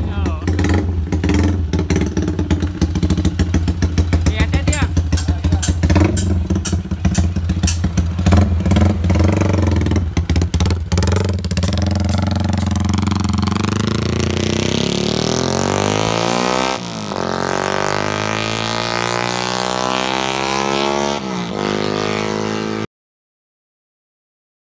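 Yamaha MX King 150 (Y15ZR) motorcycle on a loud aftermarket exhaust, revved in quick blips with a rapid crackle, then pulling away with the engine note sweeping up as it accelerates. The sound cuts off suddenly near the end.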